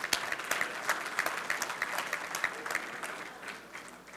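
Congregation applauding: a crowd of hands clapping that thins out and dies away over about four seconds.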